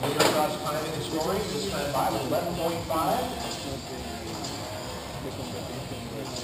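Indistinct voices talking in a large echoing hall, with a sharp knock just after the start and a steady low hum underneath.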